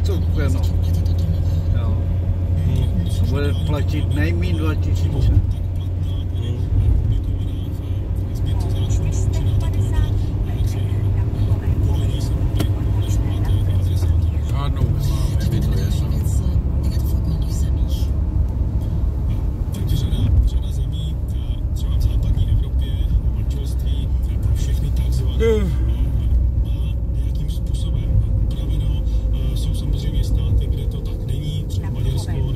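Inside a moving car's cabin: the steady low drone of engine and tyres at road speed. Faint speech and music sound underneath it.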